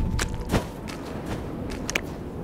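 Cartoon sound effects: a few soft, scattered taps, with a louder thud about half a second in, over a low rumble.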